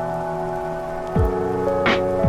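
Ambient electronic music: held synthesizer tones with a quick falling, drop-like note about a second in and a brief swelling hiss near the end.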